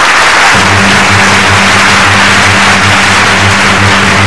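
Studio audience applauding over closing theme music; the music's low pulsing bass comes in about half a second in.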